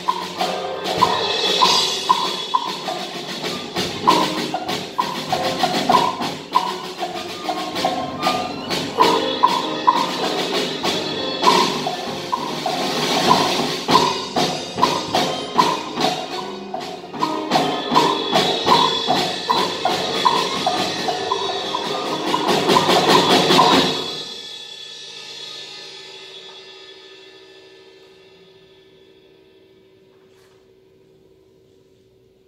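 Live chamber ensemble of percussion, piano and strings playing busy avant-garde music made of rapid, repeated struck notes. It breaks off suddenly about three-quarters of the way through, leaving a ringing that slowly fades away.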